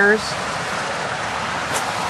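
Steady outdoor background noise: an even rushing hiss with no distinct events, as a man's voice trails off at the very start.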